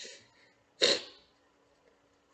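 One short, sharp burst of breath from a person, about a second in, of the sneeze or cough kind, then near quiet.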